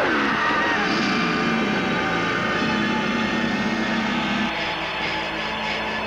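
Horror film trailer soundtrack: layered sustained electronic drones and eerie effects, shifting about four and a half seconds in to a rapid high pulsing.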